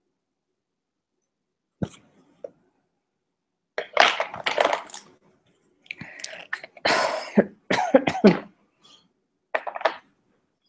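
A person coughing and clearing their throat in a string of short bursts over a video-call microphone, after a single click about two seconds in.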